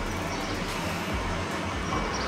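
Steady background noise: an even hiss with a low, wavering rumble and no distinct events.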